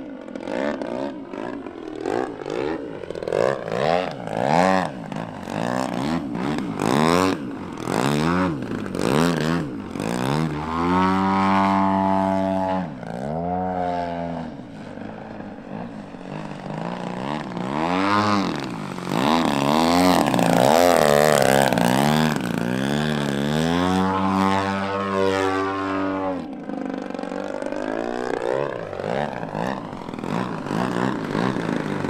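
The engine and propeller of a Pilot RC Laser model aerobatic plane in flight. Its pitch rises and falls in long sweeps as the engine revs up and down and the plane passes to and fro.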